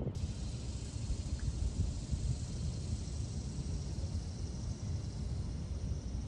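Wind rumbling irregularly on the microphone, with a faint steady hiss above it.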